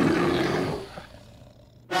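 Cartoon monster roar sound effect, rough and growly, fading away about a second in.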